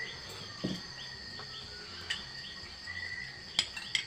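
Crickets chirping steadily at night, a continuous high trill with regular repeated chirps. Near the end come two sharp clinks of cutlery against dishes.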